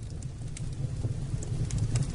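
Low, wavering drone of meditation music, slowly swelling in loudness.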